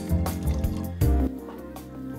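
Soy milk being poured from a carton into a pot of soup, under background music with steady held tones.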